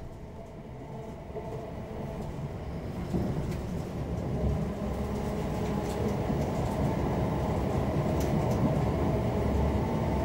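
Running noise heard from inside a Class 720 Aventra electric multiple unit in motion: a low rumble of wheels on track that grows steadily louder, with a few light clicks in the second half.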